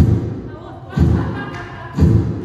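Three heavy low thumps in a steady beat, about one a second.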